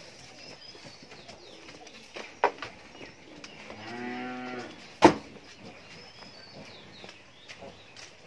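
A cow mooing once, one call about a second and a half long near the middle. A sharp knock follows right after it and is the loudest sound; a smaller knock comes about two and a half seconds in.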